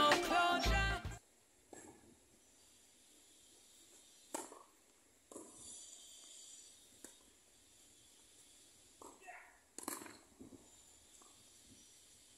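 Background music that cuts off suddenly about a second in, then a few sharp pops of tennis rackets striking the ball during a rally on a hard court, the loudest about four seconds in and more around ten seconds.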